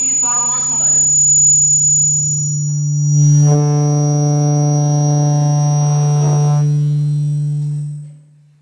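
A loud, steady electronic drone: a low hum with a stack of overtones and a thin high whine on top. It swells slightly about three seconds in and fades out quickly at the end. A man's voice is heard over the first second.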